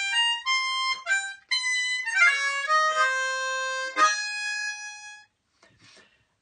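Diatonic blues harmonica, cupped in both hands, playing a quick jazzy single-note phrase with a fast downward glissando in the middle, ending on a held note that fades out about five seconds in.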